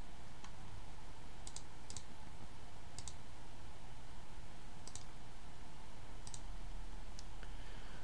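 Faint, scattered clicks at a computer, about seven over the stretch, several of them in quick pairs, over steady room hiss.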